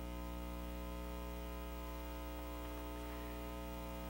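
Steady electrical mains hum: a low, even buzz with many higher tones stacked above it, unchanging throughout.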